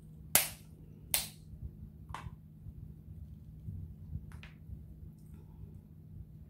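Snow crab leg shell snapped apart by hand: two sharp, loud cracks within the first second and a half, then fainter cracks about two and four and a half seconds in.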